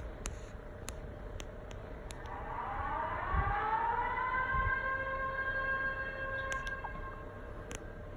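Municipal disaster-prevention radio (bōsai musen) outdoor siren, winding up from about two seconds in with a rising pitch, then held on one steady tone before dying away near the end. It is the fire alarm that calls out the volunteer fire brigade to a reported fire.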